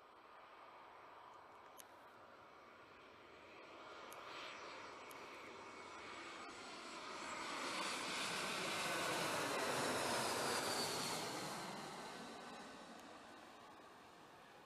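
Twin-engine jet airliner on final approach with its landing gear down, passing low overhead. The engine noise builds, is loudest a little past the middle, then fades with a falling whine as the aircraft goes by.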